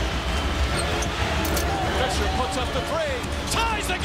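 Live NBA basketball game sound on a hardwood court: steady arena crowd noise, with sneakers squeaking in short rising and falling chirps, a quick run of them near the end, and the ball bouncing.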